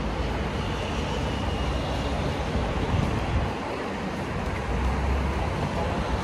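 Steady outdoor background noise, mostly the low rumble of road traffic.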